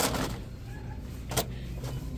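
Steady low background hum of a shop aisle, with one short sharp click about a second and a half in as a framed decorative mirror is handled on a store shelf.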